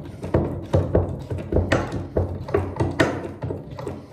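Hand-operated hydraulic pump being stroked to pressurise a small block press, a regular clicking and clunking of the pump handle at about two to three strokes a second as pressure builds to compress a soil-cement mini block.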